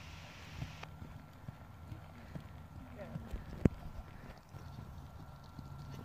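Hoofbeats of a ridden horse trotting on an arena surface, a run of soft, irregular footfalls. One sharp knock about three and a half seconds in is the loudest sound.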